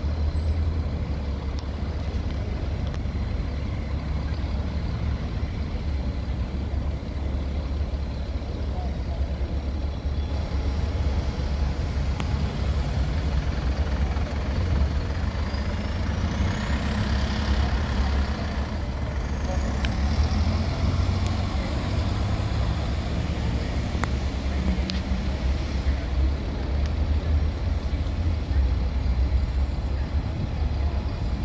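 Buses running and manoeuvring around a bus station forecourt, a steady low engine rumble throughout, with the sound of air brakes.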